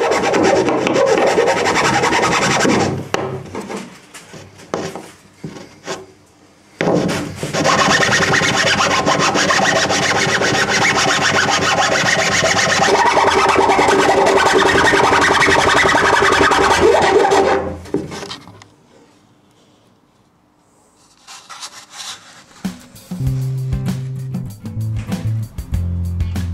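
Hand file rasping back and forth in a hole cut in the plywood deck, smoothing its edges where epoxy leftovers stopped the router bit. There are two stretches of fast strokes: a short one at first, then a longer one of about ten seconds, before the sound stops.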